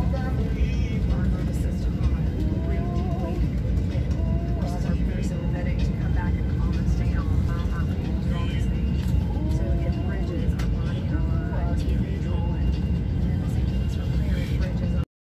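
Steady low rumble of an airliner cabin's engine and air noise, with indistinct voices over it.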